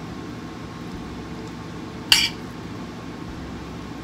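A metal spoon clinks once, sharply, against the cookware about halfway through, while taco meat is spooned onto a baked potato. Under it runs a steady low background hum.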